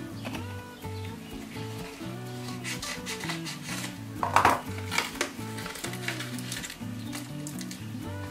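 Background music with a simple stepping melody, over the crinkling and rustling of a yellow paper padded mailer being cut open with scissors and handled, loudest in a burst about four and a half seconds in.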